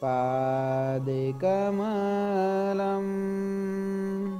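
A man's voice chanting a Sanskrit devotional verse in a slow melody, holding long drawn-out notes. About a second and a half in, the pitch steps up to a higher note that is held to the end.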